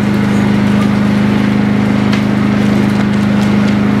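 A steady low hum of several fixed tones with a constant hiss over it, unchanging throughout.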